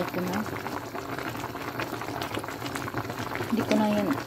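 Sinigang broth with salmon bubbling at a boil in a pot: a steady crackle of many small pops and bubbles.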